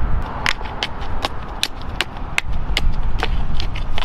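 A shovel digging into dirt and scraping as soil is shovelled back into a fence-post hole, heard as a string of short, sharp, irregular scrapes and knocks. Wind rumbles on the microphone underneath.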